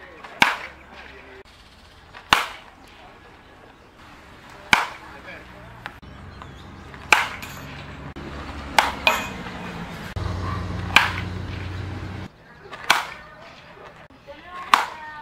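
Baseball bat hitting thrown balls in batting practice: sharp cracks about every two seconds, seven in all. A low steady drone builds from about six seconds in and cuts off suddenly near the end.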